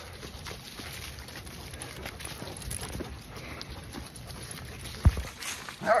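Footfalls of a walker and several dogs on a path of fallen leaves, with faint scattered steps and a single low thump about five seconds in.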